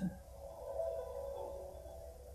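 Soft background music of several held tones sustained together, like a steady chord, from an anime episode's soundtrack.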